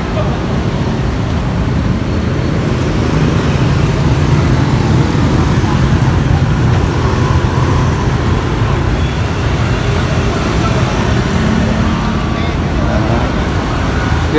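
Steady street traffic noise: a low rumble of motor vehicle engines running, a little louder from a few seconds in.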